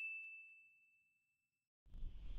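A single high bell-like "ding" notification sound effect, the chime for clicking a subscribe bell icon, ringing out and fading away over about a second and a half. A low rumble starts near the end.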